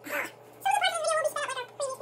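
A high-pitched whining call about a second long that wavers and falls in pitch, with a short sound just before it and a brief similar one near the end.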